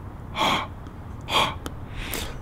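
A person breathing out hard through the mouth twice, two short breathy puffs about a second apart.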